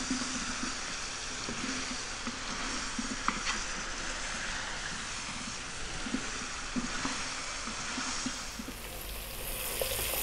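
Chopped vegetables sizzling steadily in olive oil in a pot over medium heat as they sweat down. A few light clicks come from the wooden spoon stirring them against the pot.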